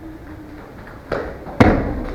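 A barefoot jumping front kick striking a handheld foam kick shield: a lighter knock about a second in, then one sharp, heavy thump.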